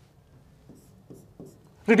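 A few faint, short pen strokes on an interactive display as lines are drawn under the text on screen. Speech resumes right at the end.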